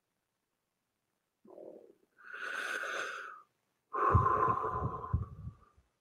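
A man taking a deep breath in, audible on the microphone, followed about a second later by a longer, louder breath out.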